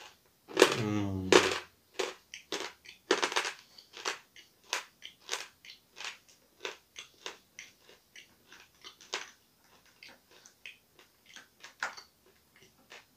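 Hard, dry pieces of edible clay being chewed: a run of sharp, crisp crunches, about two or three a second, getting softer toward the end. A brief hummed voice sound comes about half a second in.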